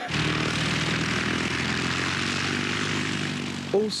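A propeller aircraft's engine running with a steady droning hum, starting suddenly and easing off slightly near the end as a voice begins.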